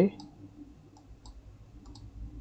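A few faint computer mouse clicks at irregular intervals over a low background hum.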